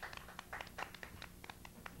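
A few people clapping their hands, a light, uneven patter of claps from a small group.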